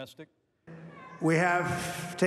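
A man speaking English into a microphone at a rally, starting about a second in with a long drawn-out word over a hiss of crowd noise, after a brief silent gap; the last syllable of a Korean news narration ends right at the start.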